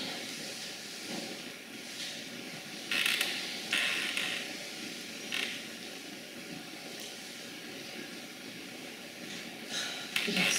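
A faint steady hum in a quiet room. About three seconds in it is broken by two short rustling noises, then a briefer one a second or so later.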